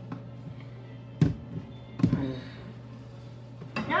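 Two sharp knocks of kitchen items being handled on the counter while measuring out flour, one about a second in and another about two seconds in, over a steady low hum.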